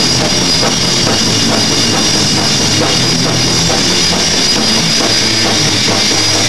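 Punk rock band playing live, loud and steady: drum kit driving an instrumental passage under electric guitars.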